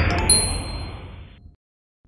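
Logo sting: a bright chime rings at the start over a rushing, jet-like whoosh that fades out about a second and a half in.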